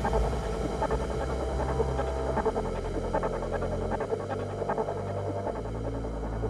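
Quiet outro of a darksynth track with the beat dropped out: held low bass synth notes that change pitch a few times under a faint, sparse synth texture.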